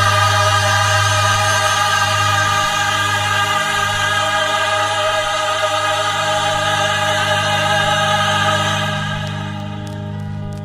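Choir singing long held chords over a steady low bass note, the music dropping away near the end.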